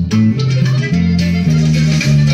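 Electric bass guitar playing a norteño bass line, one low note after another, about three notes a second.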